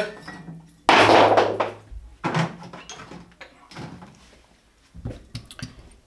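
Hard bar equipment being rummaged through under a counter: a sudden loud clatter about a second in, then scattered knocks and clinks as items are moved about.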